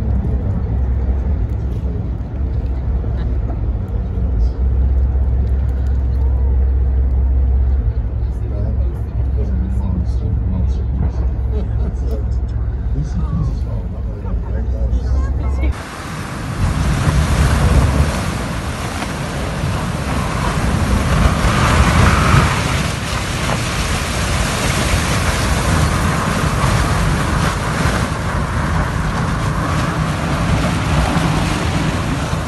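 A steady low rumble for the first half. From a cut about halfway, the loud, dense grinding and crunching of the icebreaker Arktika-2's hull ramming through thick ice and heaving up broken slabs.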